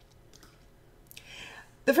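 A brief lull in a woman's speech: a few faint clicks, then a soft breath, and she begins speaking just before the end.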